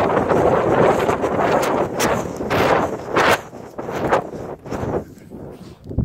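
Wind buffeting the camera's microphone while its holder runs down a sand dune, with short puffs roughly every half second, which thin out in the last couple of seconds.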